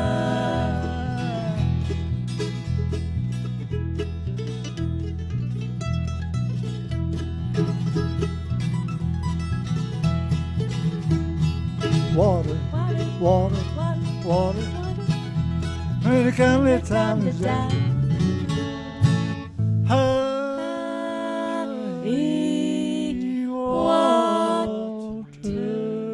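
Bluegrass band playing acoustic guitar, mandolin and electric bass, with a steady walking bass line and singing. About twenty seconds in the bass drops out and the song ends on a held, ringing chord.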